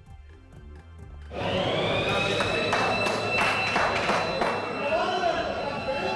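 Electric siren at a wholesale fish market starting about a second in, rising briefly in pitch and then holding a steady high wail. It signals the opening of the fish sale, over a murmur of voices.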